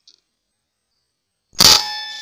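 A single sudden, loud rifle shot about one and a half seconds in, followed by a ringing tone that fades.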